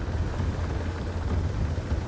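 Helicopter running: a steady engine and rotor noise with a strong deep rumble.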